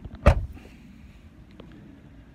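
Rear side door of a Ford Kuga being shut: a single solid thud about a quarter of a second in.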